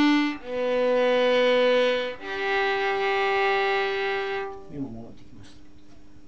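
Violin playing slow, separately bowed notes of a descending G major arpeggio: the end of a held D, then B, then a low G, which stops about four and a half seconds in. A voice speaks a few soft words near the end.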